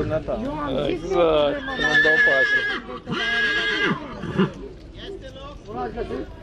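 A horse whinnying: one long, high call in two parts, with a brief break in the middle.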